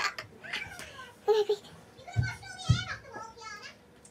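Girls' voices in short, scattered bits of talk, with two thumps about half a second apart just past the middle.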